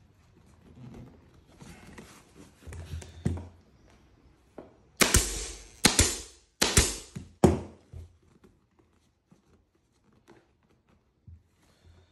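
Pneumatic staple gun firing several times in quick succession about halfway through, each shot a sharp snap with a short hiss of air, driving staples through a vinyl seat cover into the plastic seat base. Before that, the faint rustle of the cover being pulled over the seat's edge.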